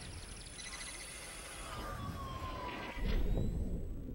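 Electronic sound effects of an animated TV channel logo ident: whooshes and electric crackling with gliding tones, a falling tone near the middle, and a low hit about three seconds in that then fades away.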